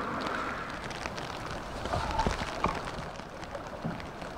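Rain falling on a river's surface: a steady hiss with small scattered splashes.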